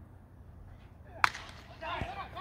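A single sharp crack of a wooden baseball bat hitting a pitched ball, about a second and a quarter in. Voices from the stands start to rise near the end.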